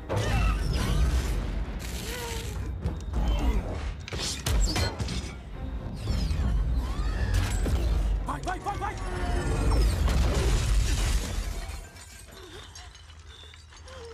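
Film battle sound effects: a dense run of crashes, shattering debris and metallic clanks over a heavy low rumble, mixed with music. It drops off sharply about two seconds before the end, leaving a much quieter stretch.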